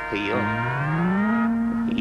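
A long, low moo that rises in pitch about half a second in, then holds steady on one note.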